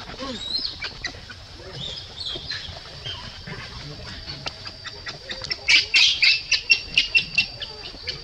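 Infant macaque squealing: a few high, gliding cries, then a rapid run of about ten loud, sharp squeals, about five a second, in the second half. A steady high insect whine runs underneath.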